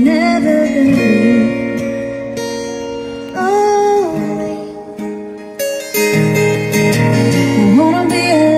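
A woman singing long held, gliding notes over a steel-string acoustic guitar played with a capo, a Martin X Series, in a solo acoustic song.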